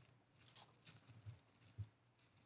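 Near silence: room tone, with a few very faint brief ticks or rustles spread through it.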